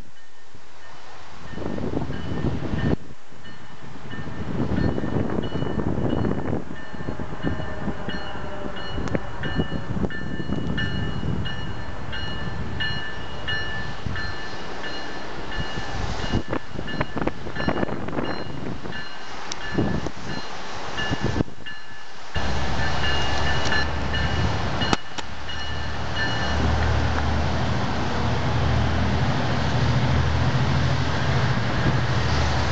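GO Transit diesel commuter train approaching, its rumble building and getting louder over the last several seconds.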